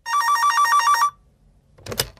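Electronic telephone ringing: one ring about a second long, a fast warble between two close pitches, as the call to the campground comes through. A few short clicks follow near the end.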